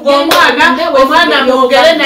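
A woman talking emphatically in a small room, with a sharp hand clap near the start as she brings her hands together.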